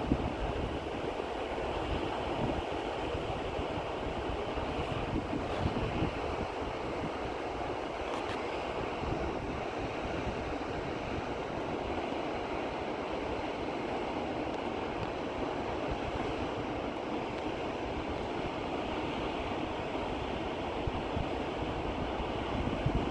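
Large waterfall rushing: a steady, unbroken noise of falling water.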